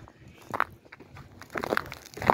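Footsteps crunching in snow, a few scattered steps.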